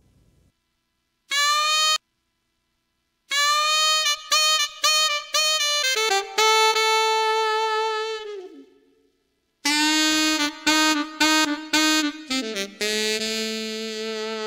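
A keyboard's saxophone voice playing a melody: a short note, then two phrases of quick notes each ending on a held note that slides down in pitch. It sounds through one wide parametric EQ cut of about 12 dB at Q 2, swept from around 540 Hz up to around 1 kHz, which hollows out its midrange.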